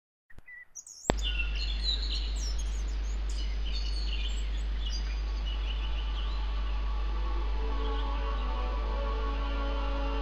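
Birdsong chirping over a steady low hum, with sustained orchestral notes fading in about halfway through and building: the opening of the song's backing track.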